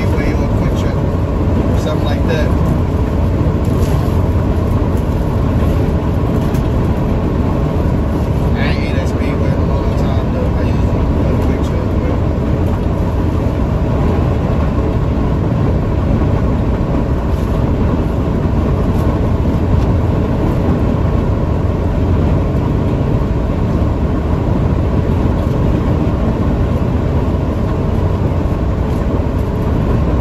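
Steady road and engine noise inside a delivery truck's cab while it is being driven.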